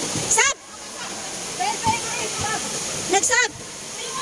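Basketball shoes squeaking on a hard outdoor court, two short squeaks, one near the start and one near the end, over a steady rushing hiss and faint voices of players and onlookers.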